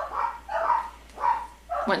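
Three short, soft vocal sounds, roughly half a second apart.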